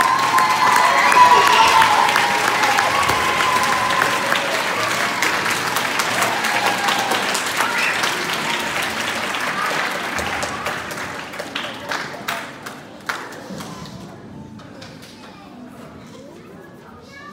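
Audience applauding in a large hall, with voices mixed in. The applause swells in the first couple of seconds, then dies away to a few scattered claps near the end.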